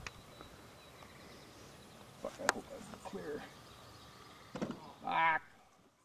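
Quiet open-air background with a few scattered short sounds, among them a sharp click about two and a half seconds in, and a brief voice sound near the end that is the loudest thing. The sound fades out at the very end.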